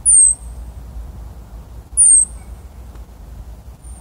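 Richardson's ground squirrels giving high-pitched alarm calls at a red fox: two short calls, each falling in pitch, about two seconds apart.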